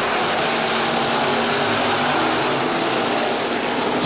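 IMCA Sport Modified dirt-track race cars' V8 engines running at racing speed around the oval, a steady dense drone of several cars together.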